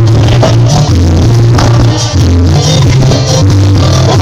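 Live cumbia band playing loud, with a deep bass line changing notes every half second or so under steady percussion.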